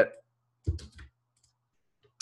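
A few short clicks of computer keyboard keys being typed, a pair about two-thirds of a second in and one more near one second.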